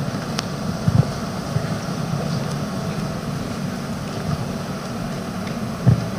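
Steady background hum and murmur of a press conference room, broken by a few soft knocks.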